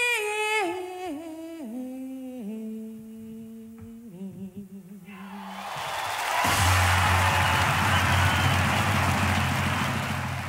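A woman's powerful blues voice sings a long held phrase with wide vibrato, stepping down note by note and fading out after about five seconds. Then a live crowd's cheering and applause swells in and holds loudly to the end.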